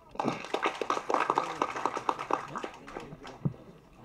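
Audience applauding in scattered claps, thinning out and stopping about three and a half seconds in.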